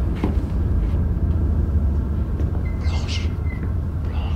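A deep, steady low rumble with a few faint clicks early on and a brief high creak about three seconds in.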